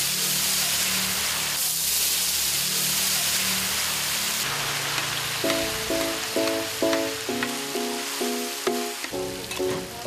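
Diced firm tofu frying on a hot iron griddle, a steady loud sizzle. Background music with short repeated notes comes in about halfway through.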